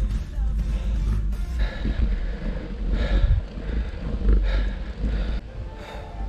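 Wind rumbling on the microphone of a moving bicycle, with music playing over it.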